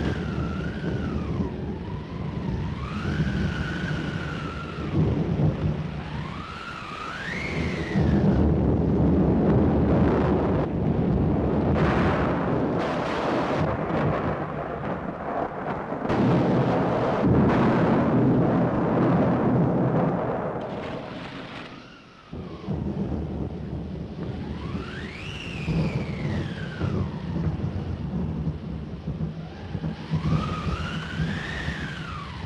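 Storm effects for a hurricane: heavy wind and rain noise with a howling whistle that rises and falls in pitch. The noise swells loudest from about eight to twenty seconds in, dips briefly a little after twenty seconds, then the howling returns.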